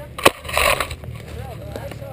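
A sharp knock about a quarter second in, then a short rustling hiss, over a steady low rumble, with brief voices later.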